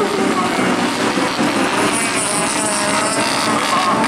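Autocross race car engines revving as the cars race on the dirt track, their pitch rising and falling with the throttle.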